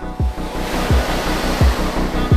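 Ocean surf washing in, swelling to a peak about a second in and easing off, over background music with a steady low bass beat.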